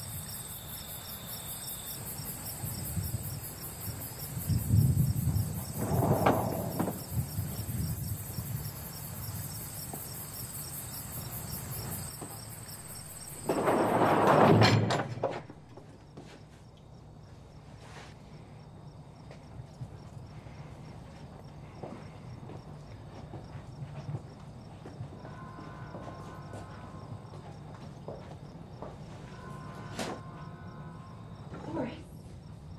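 Crickets chirping steadily, with two louder bursts of noise; the cricket sound cuts off abruptly about halfway through, leaving quieter background ambience.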